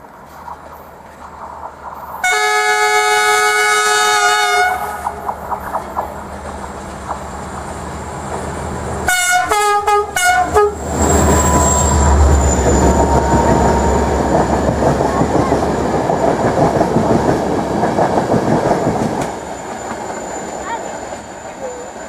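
Train horn sounding one long chord, then a quick series of short blasts, followed by the train passing with engine rumble and the noise of wheels on rails.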